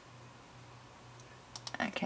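A few quick computer mouse clicks about one and a half seconds in, over quiet room tone with a low steady hum.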